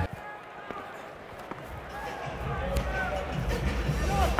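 Indoor lacrosse arena ambience heard through a player's body mic: a steady crowd murmur with faint distant voices and a few light knocks, the rumble growing louder about halfway through.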